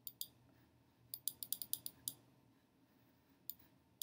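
Faint, sharp clicks of a computer mouse: two at the start, a quick run of about eight in the middle, and one more near the end.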